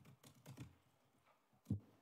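A single sharp click near the end, the push button of a desk conference microphone being switched, after faint voices in the first half second.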